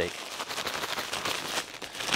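Pieces of fish being shaken in a plastic zip-top bag of breading mix: a fast, continuous rattle and crinkle of plastic and coating.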